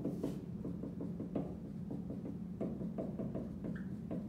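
Writing on a board: a quick scratchy stroke at the start, then scattered taps and clicks of the writing tool against the board, over a steady low hum.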